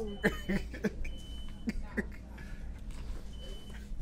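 A few short bursts of stifled laughter and breath over a steady low hum of store background noise, with three brief high steady tones scattered through.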